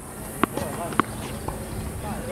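A tennis ball bouncing on a hard court: two sharp pops about half a second apart, then a fainter tap.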